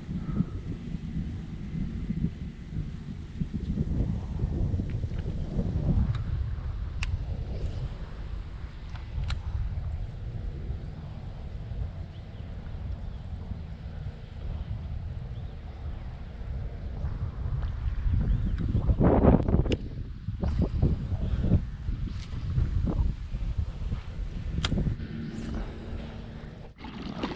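Wind buffeting the microphone in uneven gusts, a low rumble that swells for a couple of seconds about two-thirds of the way in, with a few faint clicks scattered through it.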